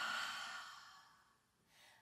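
A woman's long breath out through the mouth in a slow breathing exercise: a soft, airy exhale that fades away over about a second and a half.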